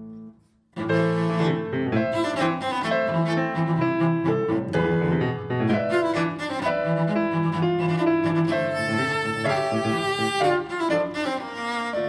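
Cello played with piano accompaniment. The music breaks off in a short pause just before one second in, then resumes with a run of quick, detached notes in the cello over the piano.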